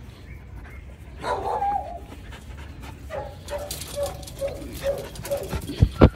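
Dogs vocalizing during rough play: one longer cry about a second in, then a run of short repeated barks, about two a second, amid scuffling. A sharp thump comes just before the end.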